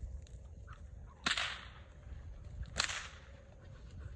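A bull whip cracked twice, two sharp cracks about a second and a half apart.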